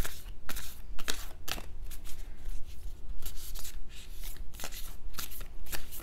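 A deck of large, non-glossy oracle cards being shuffled by hand: a steady run of short papery flicks and taps, about two a second.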